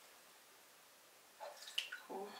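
Water splashing and dripping in a plastic tub of watery paper pulp as a papermaking mould and deckle is moved in it, a short burst about one and a half seconds in with one sharper splash near the end.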